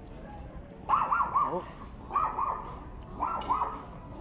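Small dogs yapping in three quick bursts of two or three high barks each, about a second apart, starting about a second in: small dogs barking at a bigger, calm dog.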